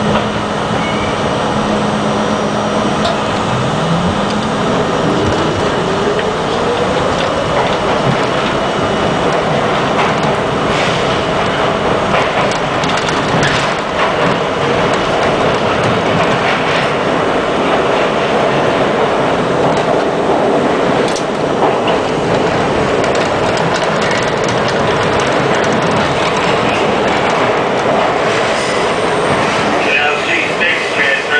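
R42 subway train pulling away and picking up speed: a motor whine rises steadily in pitch over the first several seconds, then gives way to a steady loud running roar through the tunnel, with occasional sharp clacks of wheels over rail joints.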